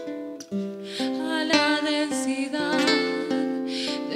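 Acoustic guitar picking single notes that start crisply and ring on, an instrumental passage between sung lines of a slow folk song.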